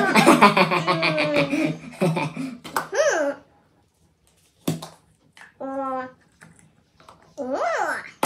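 Wordless vocal sounds and laughter from a man and a woman: pulsing laughter and exclamations for the first few seconds, a pause broken by a single click, then a short held vocal note and a rising-and-falling exclamation near the end.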